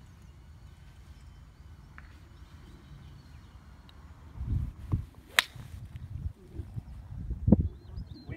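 A single sharp click about five seconds in, a putter striking a golf ball on a short putt. Wind buffets the microphone in low gusts, with a loud thump near the end.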